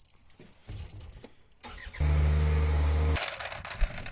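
Faint clicks and rattles, then about two seconds in an engine runs with a steady low note for just over a second before cutting off sharply.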